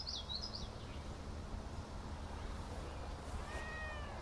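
Quiet outdoor ambience: faint high, quick bird chirps in the first second, then a short faint animal call that rises and falls in pitch near the end.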